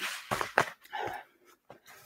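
Crinkling rustle of a food packet being put down, with a few small clicks, then a short breath and faint handling sounds.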